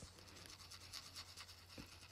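Faint rubbing of a paper tortillon over graphite on a small paper tile, blending the pencil shading into the paper.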